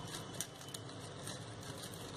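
Crepe paper rustling and crinkling under the fingers in short, scattered bursts, with one sharp click about half a second in, over a steady low hum.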